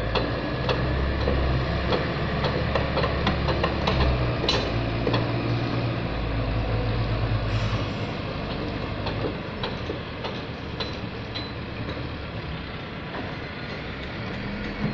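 Wheel loader's diesel engine working as it pushes through sand piles, strongest over the first half and easing off about eight seconds in. Sharp knocks repeat throughout.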